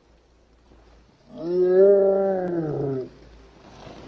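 A man's drawn-out moan, about two seconds long, rising and then falling in pitch, starting a little over a second in.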